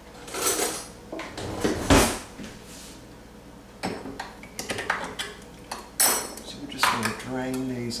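Metal spoon and tin cans clattering on a counter: a spoon clinking against an opened can of corn as its lid is lifted, with a louder knock about two seconds in and a quick run of small clinks later on.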